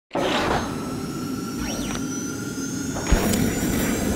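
Logo intro sound effect: a sustained whooshing swell with a sweeping tone partway through and a sharp hit about three seconds in.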